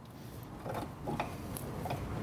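A few faint clicks and rustles of hands working parts back into place inside a Vespa scooter's engine bay, such as pressing the spark plug cap back on.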